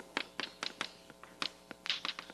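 Chalk writing on a blackboard: a string of short, sharp taps and strokes at an uneven pace, the strongest near the end.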